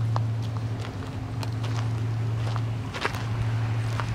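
Irregular footsteps on a gravel path, a scattering of soft crunches and scuffs, over a steady low hum.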